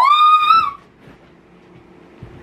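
A woman's short, high-pitched excited scream that rises and then holds on one note.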